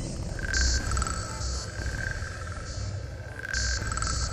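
Layered ambient soundscape: a steady low rumble under short, recurring bursts of high hiss and a thin wavering trill.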